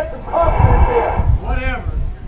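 A man's voice calling out loudly in two short phrases, over a steady low rumble.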